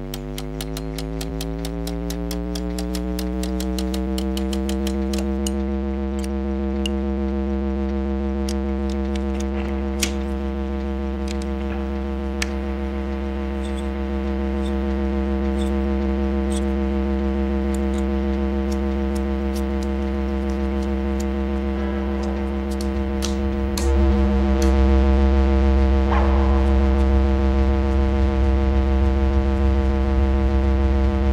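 Tube amplifier humming and buzzing as it is powered up and turned to overdrive: the buzz rises in pitch over the first few seconds, then holds steady over a deep mains hum. Sharp clicks come quickly at first and thin out, and the hum grows louder about 24 seconds in as the guitar's volume knob is turned up.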